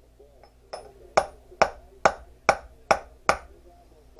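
Hammer striking a small metal piece on a wooden board: a light tap, then six sharp blows about two a second, each with a brief ring.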